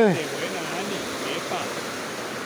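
Steady rush of a fast-flowing creek running over rocks.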